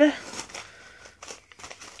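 Crinkling and rustling of the plastic wrapper of an individually wrapped sanitary pad as it is handled, a faint irregular crackle with small clicks.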